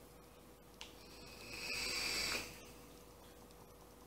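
A faint click, then a draw of air through a vape tank's airflow: a hiss with a light whistle that builds for about a second and a half and stops.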